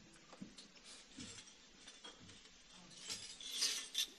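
A frame drum with jingles, a tambourine, being handled and picked up: a few faint knocks, then a brief rattle of its jingles a little past three seconds in.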